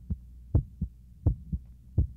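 Heartbeat sound effect: low double thumps in a steady lub-dub rhythm of about 85 beats a minute, over a faint low hum.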